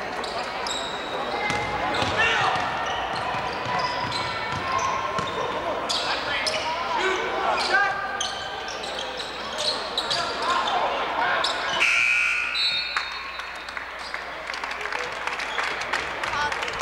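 Basketball game sounds in a gym: a ball dribbled on the hardwood court, with repeated short knocks, under the voices of players and spectators. A few brief high tones come about twelve seconds in.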